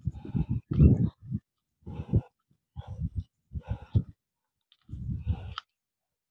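Heavy, laboured breathing close to the phone's microphone: a person out of breath from climbing a steep path, with uneven breaths every half second to a second.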